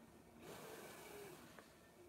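Near silence, with a faint hiss of air starting about half a second in and lasting about a second: a home ventilator pushing a breath through a nasal mask.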